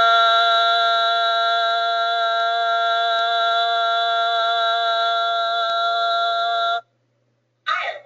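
A person's voice holding a loud, sustained 'ah' vowel at one steady pitch for a maximum-duration exercise in LSVT LOUD voice treatment. It stops suddenly about a second before the end.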